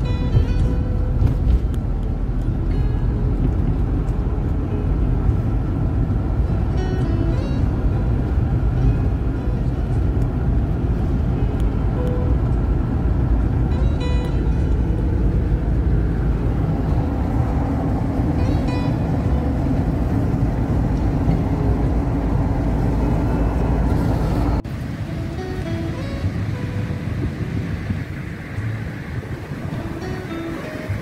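Steady low road and engine noise inside a moving car, with music playing over it. The rumble cuts off abruptly near the end, leaving the music over a lighter background.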